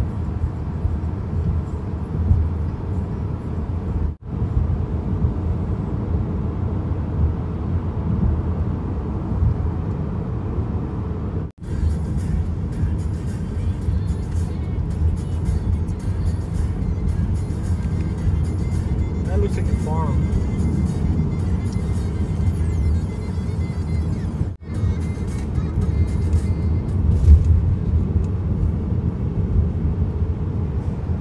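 Steady low rumble of road and engine noise inside a moving car's cabin, cut off for an instant three times.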